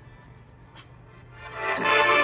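Rap trap instrumental beat playing through the Samsung Galaxy Tab A8's built-in side speakers. A quiet break with a few light hi-hat ticks, then the full beat comes back in loud about a second and a half in.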